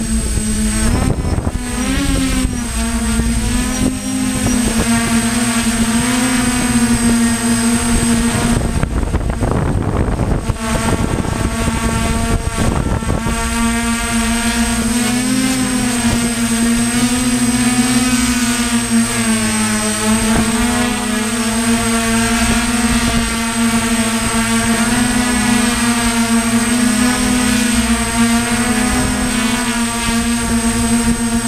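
DJI F550 hexacopter's six brushless electric motors and propellers, heard from on board, buzzing steadily, the pitch wavering up and down as the throttle changes. Gusts of wind noise hit the microphone in the first half.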